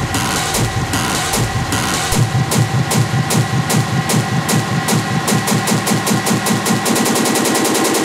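Hard techno from a DJ mix at a build-up. The deep bass drops away about two seconds in, and the repeated percussive hits speed up into a fast roll near the end, over steady held synth tones.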